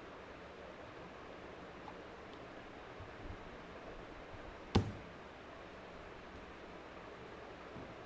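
Steady low hiss with one sharp click a little past the middle.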